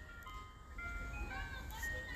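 Faint ice cream truck jingle: a simple chiming melody of single held notes stepping up and down in pitch.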